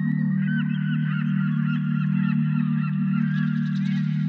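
Many birds chirping in quick, overlapping short calls over a steady, low held drone of ambient music.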